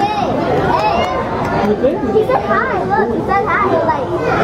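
Children's voices chattering and calling out, several at once, with high, swooping pitches over a background babble of other voices.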